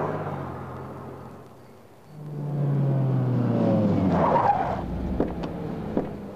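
A car driving on a street. Its sound fades away over the first two seconds, then a car engine swells up again with a falling note. A brief tyre squeal comes about four seconds in, and two sharp clicks follow near the end.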